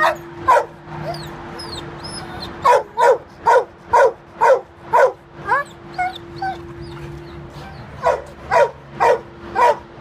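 A dog barking in steady runs of about two barks a second, one in the first half and another near the end, with a few short high whines between the runs.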